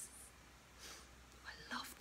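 A woman's faint breaths and soft whispered mouth sounds in a pause between spoken phrases: a short hiss at the start and a breathy, half-voiced sound near the end.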